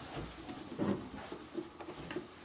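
Faint taps and rustles of a cardboard box being handled and set down on a padded sofa arm.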